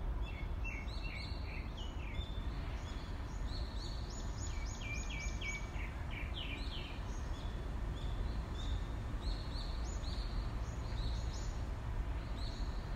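Small birds chirping in quick runs of short, downward-sliding high notes, busiest in the first half and fainter later, over a steady low background rumble.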